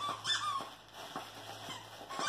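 A dog whining in a few short, high, wavering whimpers in the first half-second or so. Faint crinkling as a plush toy is handled follows.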